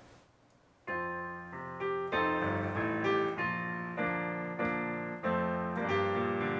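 Electronic keyboard on a piano voice playing the opening of a hymn. It starts about a second in with a full chord, then moves on to a new chord every half second or so.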